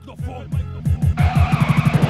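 Turntable scratching over a hip hop beat in an instrumental break, the strokes coming faster and denser in the second half.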